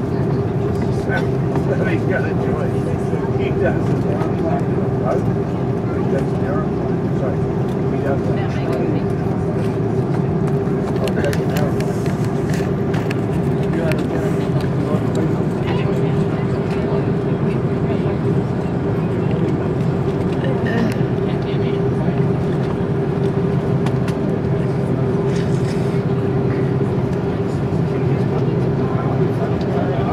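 Steady cabin drone of an Airbus A330-200 taxiing, heard from a window seat: engines at low power and cabin air, with a constant hum at one pitch and no spool-up. Faint passenger voices sit under the drone.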